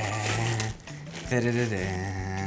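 A man's voice making wordless sounds in two short stretches, with a brief pause near the middle.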